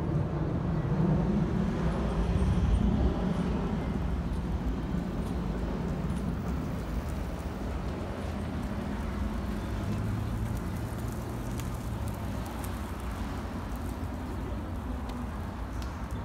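Street traffic: a steady low rumble of passing vehicles, loudest in the first few seconds and easing off after.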